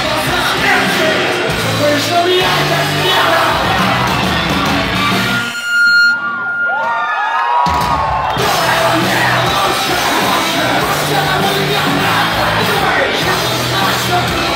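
Punk rock band playing loud and live in a hall, heard from within a shouting crowd. About five and a half seconds in, the band stops for roughly two seconds, leaving a single held high tone and some yelling, then crashes back in.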